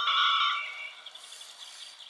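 A sound effect from the Teddy Ruxpin story cassette, played through the toy's small speaker: a high note with several tones that starts suddenly and fades within about a second, followed by a faint hiss.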